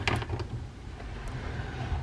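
Faint handling sounds of a plastic action figure being stood up on a table, with a few light clicks early on, over a low steady hum.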